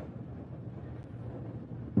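Low, steady background noise with no speech: the room tone of an interview recording.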